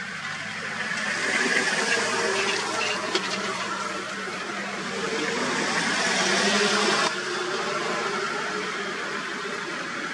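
Vehicle engine running with a rushing noise that swells twice, then drops suddenly about seven seconds in.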